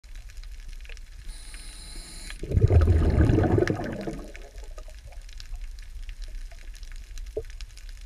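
Water moving and sloshing around an underwater camera held just below the surface. It is heard as a loud muffled rush about two and a half seconds in that fades away over the next two seconds, followed by faint scattered clicks.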